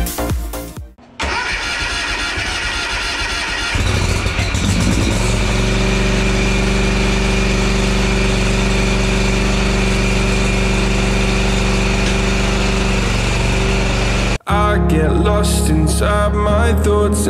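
Toro stand-on mower's engine being started: a couple of seconds of rough cranking, then it catches and rises in speed about four seconds in, and it runs steadily until the sound cuts off near the end.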